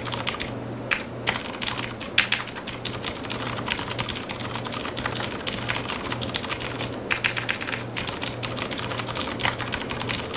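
Fast, continuous typing on a Das Keyboard Model S Professional mechanical keyboard with clicky key switches: a dense clatter of keystrokes with no pauses.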